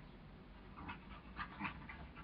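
Border collies play-fighting, with several short, faint dog vocal sounds in quick succession in the second half.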